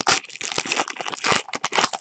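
A trading-card pack's wrapper crinkling and crackling as it is torn open by hand, in a quick run of sharp crackles.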